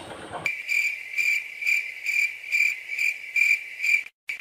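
Cricket chirping sound effect: a high, even chirp repeating about twice a second, coming in about half a second in and cutting off sharply at the end.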